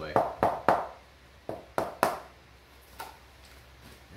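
Hammer tapping a luxury vinyl plank into place to close the seam tight. There are sharp knocks: three quick, loud ones in the first second, three more about a second and a half in, and a faint one near the end.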